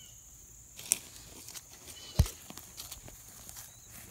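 Handling noise from a phone held in the hand: scattered clicks and rustles, a sharp click about a second in, and a heavy thump just after two seconds.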